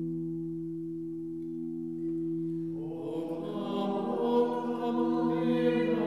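A held organ chord of a few soft steady tones, joined about halfway through by a small group of voices singing a chant-like melody over it.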